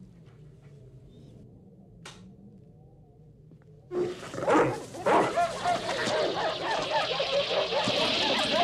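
Quiet low hum, then about halfway in a sudden outburst of many dogs barking, yelping and whimpering together: sled dogs in a kennel panicking as a creature attacks them.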